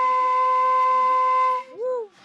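Home-made flute cut from recycled PVC pipe, blown to sound one steady, held note for about a second and a half.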